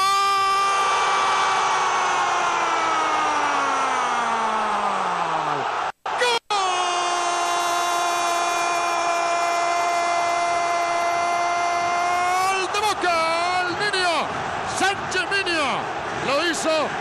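Spanish-language football commentator's long goal cry ('gol'). The first shout is held for about six seconds and slowly falls in pitch. After a brief break, a second shout is held at a steady pitch for about six more seconds, then breaks into excited shouted words.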